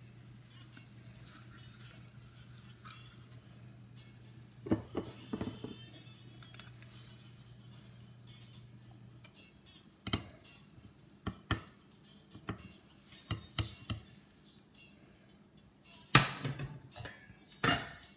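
Spatula scraping and tapping in a frying pan as fried eggs are loosened from the sides, with scattered clinks through the middle and two louder clatters near the end.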